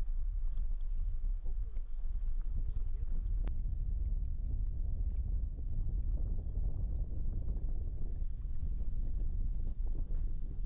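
Steady low rumble of a boat's engine out on the river, with wind on the microphone.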